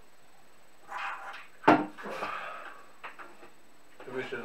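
Handling and knocking on a wooden flat-pack desk during assembly: rubbing and shuffling of the parts, one sharp knock a little under two seconds in, and a few light clicks after it.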